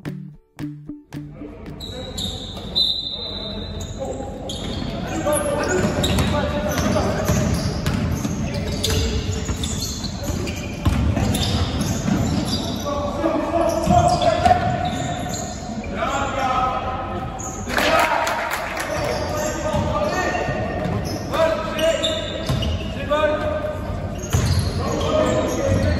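Basketball game in a large gym: the ball bouncing on the hardwood floor, with players' voices calling out, echoing in the hall. A brief bit of music ends about a second in.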